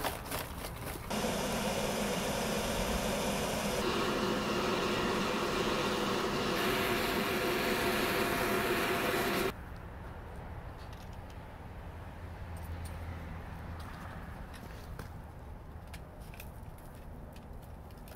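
Charcoal briquettes clattering as they are poured into a brick furnace, then the furnace's air-blower fan running steadily with a faint hum. The fan sound cuts off suddenly about halfway through, leaving a quieter background with scattered light clicks.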